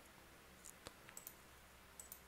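Near silence with a handful of faint computer clicks as the MATLAB code section is run.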